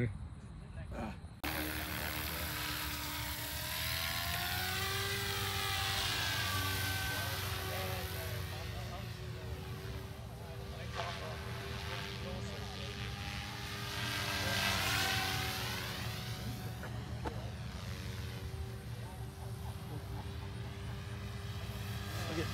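Goosky RS4 RC helicopter in flight, starting about a second in: a steady whine of its motor and rotor blades, the pitch sliding up and down as it passes back and forth.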